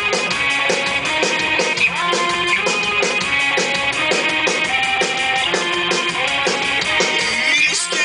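Live rock band playing: drum kit with a fast, steady beat and electric guitars playing a riff, loud.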